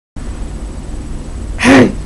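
Low steady background hum, then about one and a half seconds in a man's short vocal sound, under half a second long, its pitch rising and falling.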